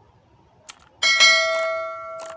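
A short click, then about a second in a bell-like ding from a subscribe-button animation, which rings and fades slowly.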